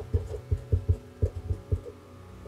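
Marker pen writing block capitals on paper over a wooden desk, close-miked: a quick run of soft low taps and scratches, about four strokes a second, over a faint steady hum.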